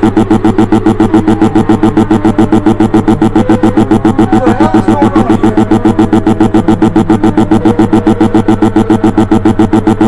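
Synthesizer music: a loud low chord throbbing evenly at about seven pulses a second.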